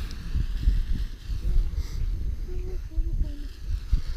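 Wind buffeting the microphone in gusts, a low rumble, with faint distant voices in the middle.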